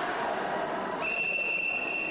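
A whistle blown in one long steady blast, a single high tone starting about a second in, over background voices. It is likely a referee's whistle.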